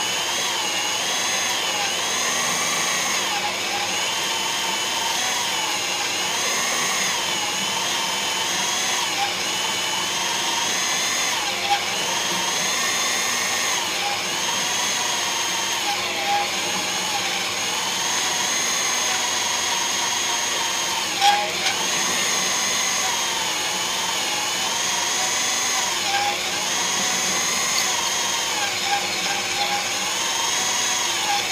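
Magnetic-base drill running a carbide annular cutter through spring steel: a steady motor whine whose pitch wavers as the cutter bites and loads. A sharp click sounds about twelve seconds in and another near twenty-one seconds.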